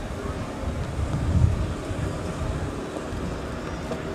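Wind buffeting the camera microphone: a low, uneven rumble that swells and falls, strongest about a second and a half in, with a faint murmur of distant voices underneath.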